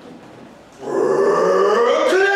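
Performers' voices: after a quieter moment, a loud drawn-out vocal shout starts about a second in, rising in pitch and then held.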